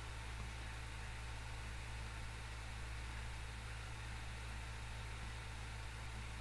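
Steady low electrical hum with an even hiss: the recording's background noise floor, with nothing else happening.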